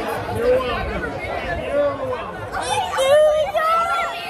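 A small group of young people's voices talking and laughing over one another, rising into louder shouts about two and a half seconds in, with general chatter behind.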